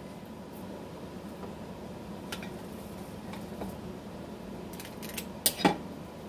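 Kitchen utensils clicking lightly now and then over a faint steady hum, with a sharper double clack about five and a half seconds in.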